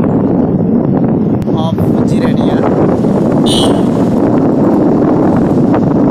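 Steady wind buffeting on the microphone of a camera riding in the open along a road, over road noise, with a short high-pitched tone about three and a half seconds in.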